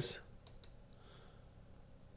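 A few faint computer mouse clicks, light single ticks spaced irregularly over quiet room tone.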